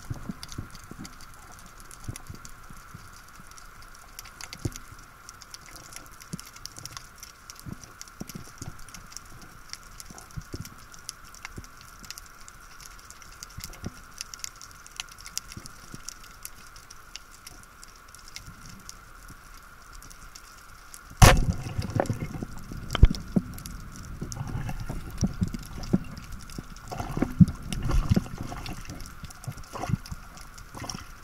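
Underwater sea ambience with faint scattered crackling, then, about 21 seconds in, a sharp crack of a speargun shot. It is followed by louder churning water noise and knocks as the speared white seabream struggles on the shaft.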